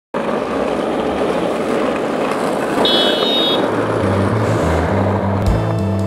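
Steady city street traffic noise, with a brief high-pitched squeal about three seconds in. A bass line comes in about four seconds in, and music with drums takes over near the end.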